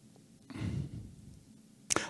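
A man's short breath, close to a handheld microphone, during a pause in speech about half a second in. A small click follows just before the speech resumes.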